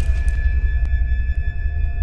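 Horror film score: a deep, steady low drone under sustained high tones, with a single faint click a little under a second in.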